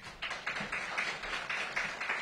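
Audience applauding: a small crowd clapping, starting about a quarter second in.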